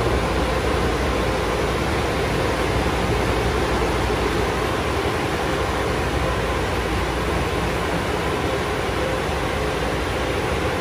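Automatic car wash's air dryer blowers running with a steady, loud rushing noise as a car rolls out of the tunnel.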